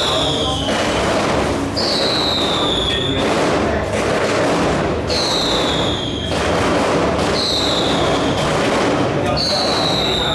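Murmur of people talking in a room, with a high-pitched whistle that slides down in pitch over about a second. The whistle repeats every two to three seconds.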